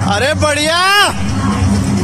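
A single loud, drawn-out shout lasting about a second, its pitch rising and then falling, over background music.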